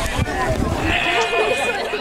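Voices of players and spectators calling out across the ballfield, with one long, high call about a second in.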